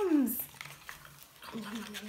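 A woman's voice making drawn-out, wordless storytelling sounds: a falling glide at the start, then about a second and a half in, a long held note at a steady pitch.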